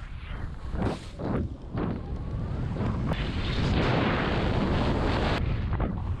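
Skis sliding and turning on snow, heard from a helmet-mounted camera, with wind rushing over the microphone. A few short scrapes come in the first two seconds, then the rush builds into a steady, louder hiss as the skier gains speed.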